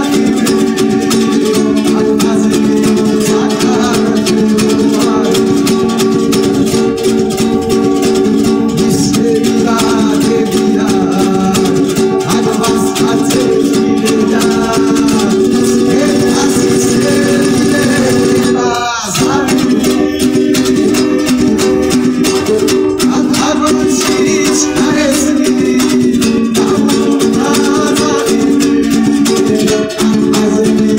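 Two panduri, Georgian three-string lutes, strummed fast and in rhythm, with a man singing a Georgian song through a small microphone amplifier; the sound dips briefly about two-thirds of the way through.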